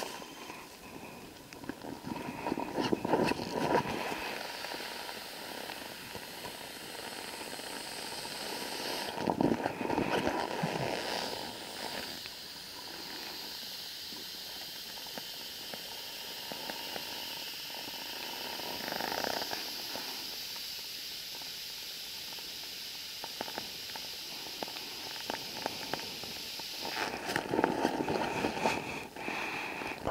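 A black nylon food bag rustling in bursts as hands press the air out of it and fold it shut to make it airtight.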